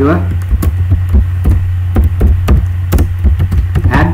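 Computer keyboard being typed on: irregular keystrokes, about three to four a second, over a steady low electrical hum.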